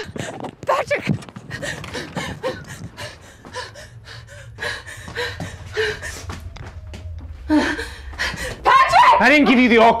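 Scattered knocks and rustles of people moving about a room with a handheld camera, over a low steady hum. A loud voice comes in near the end and rises to a shout of "All clear!"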